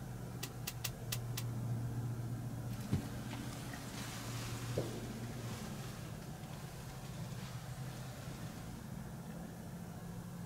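A steady low mechanical hum, engine-like, with five quick sharp clicks in the first second and a half and a few seconds of soft rustling with two light knocks in the middle.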